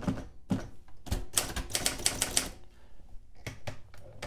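Remington manual desktop typewriter being typed on: a couple of single keystrokes, then a quick run of about ten keystrokes in just over a second, then three more near the end.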